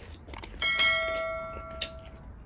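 A bell chime sound effect strikes about half a second in and rings down over about a second and a half, the ding of an on-screen subscribe-button notification bell, with a sharp click near the end.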